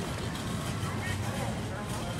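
Indistinct voices of people in the background over a steady low rumble.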